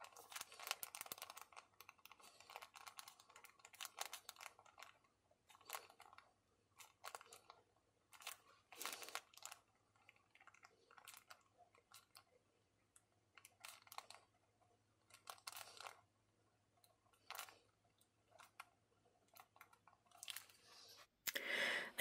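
Faint scratching of a metal pen nib writing on paper, in short, irregular strokes with brief pauses between them.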